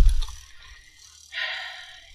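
A short pause in speech. A brief low thump or rumble comes at the very start, and a short breathy hiss follows about a second and a half in.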